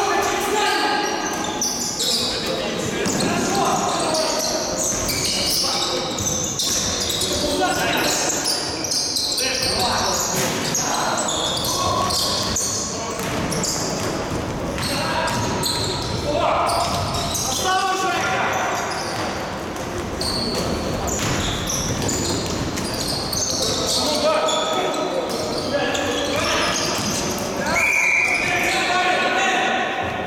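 Basketball being bounced on a gym court during play, with players' voices calling out, echoing in a large sports hall.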